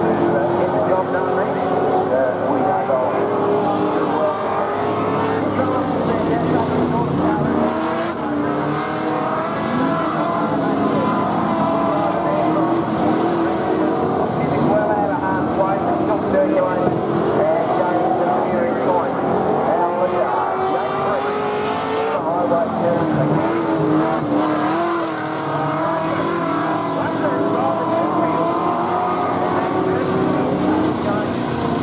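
Several AMCA speedway cars' engines running at once, their pitches rising and falling as the cars move on a dirt oval.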